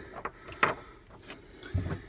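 A steel reinforcement bracket being slid into a notch in a car's sheet-metal floor panel: one sharp metal click, then a couple of fainter ticks, with a brief low grunt near the end.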